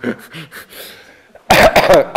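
A man coughing loudly about one and a half seconds in, mixed with laughter.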